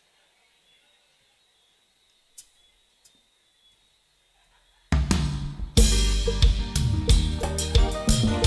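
Near silence, then about five seconds in a live band starts a song all at once, loud: drum kit with snare, bass drum, hi-hat and cymbals, over bass and other instruments.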